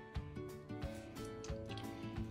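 Quiet background music: a steady beat, about three beats a second, under held notes.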